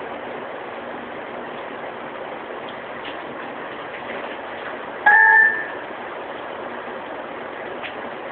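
Steady background hiss, broken about five seconds in by one loud, half-second beep.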